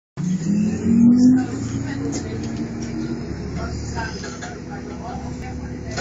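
Bus engine and drivetrain heard from inside the bus, the pitch rising as it accelerates over the first second or so, then running steadily with a low drone.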